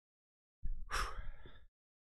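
A man's breathy gasp into a close microphone, lasting about a second, with the rush of air thumping on the mic.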